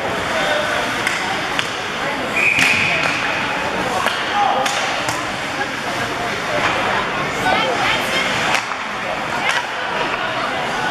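Ice hockey play in an arena: sharp clacks of sticks and puck, some near the start and several later, over crowd voices and skating noise, with a brief high steady tone about two and a half seconds in.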